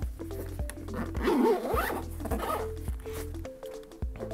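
The zipper of a headphone carry case being zipped shut in one pull, from about a second in to nearly three seconds, over steady background music.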